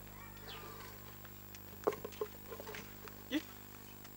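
Quiet outdoor village ambience: faint scattered calls, one gliding call early on and a short one near the end, with a few light knocks around the middle.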